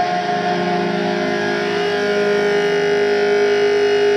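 Live band's amplified electric guitars holding a sustained, distorted drone of steady ringing tones, with no drums. The held pitches shift slightly about halfway through.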